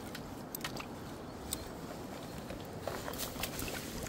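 Faint, scattered small clicks and rustles from close handling, over a low, steady background hiss.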